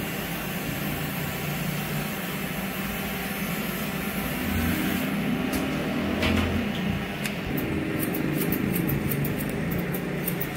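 Electric hair clipper buzzing steadily as it trims hair at the nape of the neck. A run of short, quick clicks comes in over it during the last couple of seconds.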